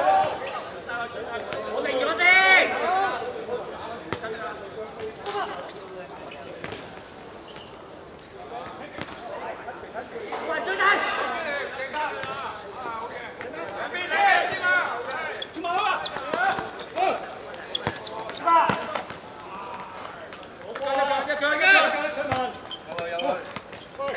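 Players shouting and calling to each other, with scattered sharp knocks of a football being kicked and bouncing on a hard court surface.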